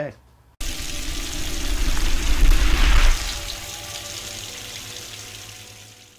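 A rushing-water sound effect. It starts abruptly, swells to its loudest about two to three seconds in, then slowly fades out.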